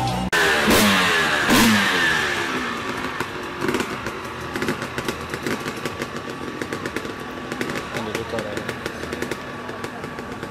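Off-road motorcycle engines revving twice sharply in the first two seconds, then running at a lower, uneven idle with a lot of popping, with people talking around them.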